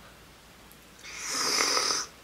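A woman's pretend slurping sip at a toy cup held to her mouth: a breathy, airy slurp about a second long, starting about halfway through.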